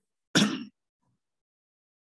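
A person clearing their throat once, a short rough burst about a third of a second long.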